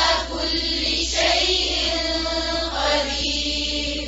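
A woman's voice reciting the Quran in a slow, melodic chant with long held notes, over a steady low hum.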